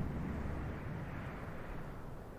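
Steady low background rumble with no distinct knocks, clicks or tones.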